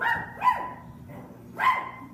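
A child imitating a dog, barking a few short, loud barks.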